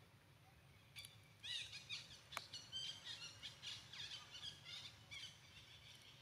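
A rapid series of short, high-pitched chirping calls, many sweeping downward, lasting about four seconds, with a single sharp click among them.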